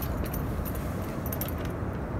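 Rumble of wind and handling on a handheld phone microphone, with several light metallic jingling clinks.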